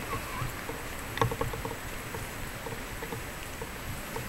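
Footsteps of a person walking on wet pavement, a regular run of soft steps over a steady outdoor background hum, with a sharper click about a second in.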